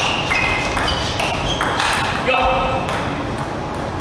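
Table tennis ball being hit back and forth in a rally, a quick series of sharp clicks from bats and table, each with a brief high ping, about two or three a second, stopping about three seconds in when the point ends.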